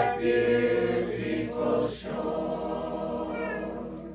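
A mixed group of men's and women's voices singing a hymn a cappella in harmony, holding long notes. The phrase ends and the voices fall away just before the end.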